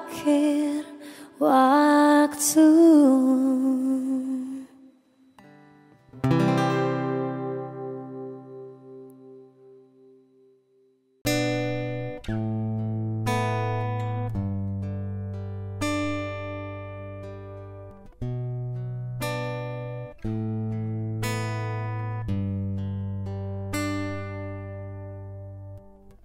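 Acoustic cover music. A sung phrase over acoustic guitar ends in the first few seconds, and a final guitar chord rings out and fades away. After a brief gap, about eleven seconds in, a slow picked acoustic guitar intro with low bass notes begins.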